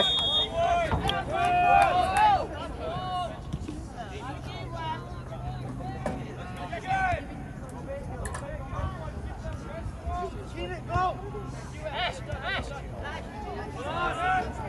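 Scattered shouts and calls from spectators and players at an outdoor soccer match, over a murmur of background chatter; the loudest shout comes right at the start.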